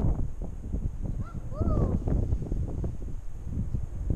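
Rumbling, buffeting noise on an action camera's microphone from wind and the camera's movement. A brief high rising-and-falling voice sounds about one and a half seconds in.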